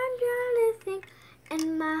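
A child singing unaccompanied in a high voice: a held note slides and ends about three quarters of a second in, a short note follows, then after a brief pause a new line begins on a held note.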